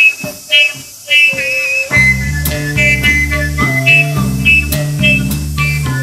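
Live band starting a song: a sparse melodic intro of a few pitched notes, then about two seconds in the drums and bass guitar come in and the full band plays on.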